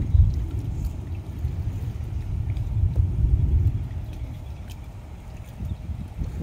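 Wind buffeting the microphone: an uneven low rumble that swells and eases, strongest in the first half and fading somewhat toward the end.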